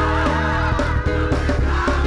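Live gospel music: a choir singing over a band with a steady beat, a high line warbling with a wide, fast vibrato through the first second.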